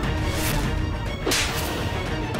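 Dramatic TV-serial background score with regular percussive hits, cut by one sharp whip-like swish sound effect about two-thirds of the way through.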